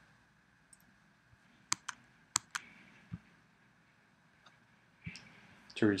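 Computer mouse buttons clicking: two quick pairs of sharp clicks about two seconds in, with a few fainter clicks around them, in an otherwise quiet room.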